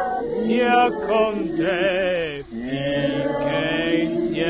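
A single voice singing a slow hymn tune, holding long notes with a wide vibrato. A short break between phrases comes a little past halfway.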